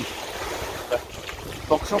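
Wind buffeting the microphone over small waves washing onto a sandy beach, with short spoken words about a second in and near the end.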